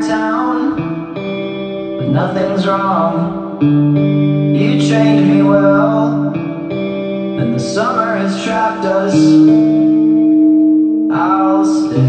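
A slow song playing, with held chords underneath and echoing sung phrases that come in every two to three seconds.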